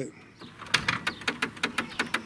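Pop-up headlight doors of a 1991 Buick Reatta folding down, heard as a quick, even run of clicks, about seven a second, for over a second.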